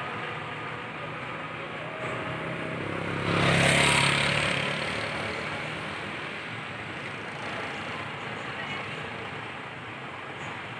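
A Hino RN285 coach's diesel engine running as the bus drives off across the terminal. A louder surge about three and a half seconds in lasts about a second, then eases back to a steady run.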